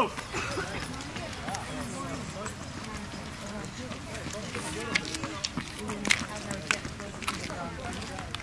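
Background chatter of spectators, with a series of short sharp steps on asphalt, the clearest ones in the second half.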